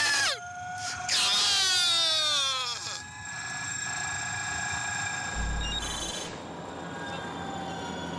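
A racing driver yelling in celebration over team radio for about two seconds, his pitch sweeping downward. Then the onboard sound of the Audi Formula E car's electric drivetrain takes over: a steady whine of several held tones over road noise, with a brief low bump about two-thirds of the way through.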